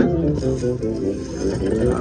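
Slot machine's free-games bonus music: a plucked-string, guitar-like tune with a steady beat, playing while the reels spin.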